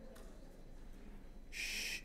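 Quiet room tone with a low hum, then a short breathy hiss about a second and a half in: a person drawing breath.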